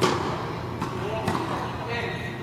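Tennis ball being hit by rackets and bouncing on an indoor hard court during a rally: a sharp pop right at the start, then two lighter knocks about a second later, with the hall's echo behind them.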